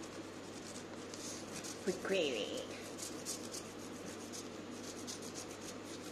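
Wax crayon rubbed across a paper plate in quick repeated strokes: the scratchy sound of colouring in.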